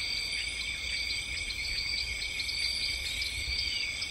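A chorus of insects trilling steadily at several high pitches, with small chirps flickering over it.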